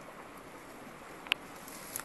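Quiet, steady rush of a small river flowing, broken by one sharp click a little past halfway and a fainter click near the end.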